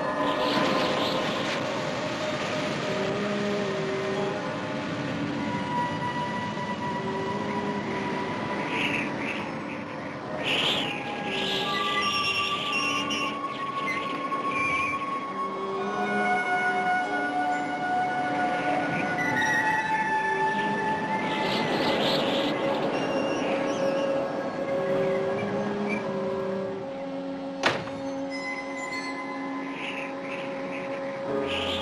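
Eerie dramatic score of long held notes that change pitch every second or two, over a steady rushing noise. One sharp click sounds near the end.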